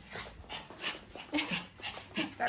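A pet dog making quick, repeated breathy sounds, with a brief faint whine near the middle.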